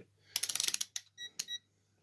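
Digital multimeter's rotary selector switch turned through its detents in a quick run of clicks, followed by a few short high beeps from the meter as it is set to continuity mode for checking thermal fuses.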